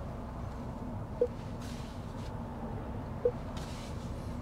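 Steady low rumble and hum of traffic heard inside an electric SUV's cabin while it sits in slow city traffic, broken by short soft tones about a second in and about three seconds in, and by two brief hissy washes.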